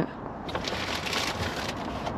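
Rustling and crinkling of shopping and packaging being handled as a boxed pudding is pulled out; an uneven, noisy rustle.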